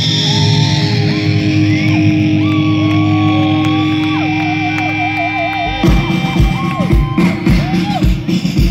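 Live punk band: electric guitar holding and bending long notes, one with a wavering vibrato, over a steady low bass note. A little before six seconds a kick drum comes in with a steady beat of about two a second.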